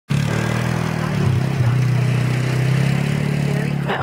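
ATV (four-wheeler) engine running loud and close, a steady low engine note that holds through the whole stretch.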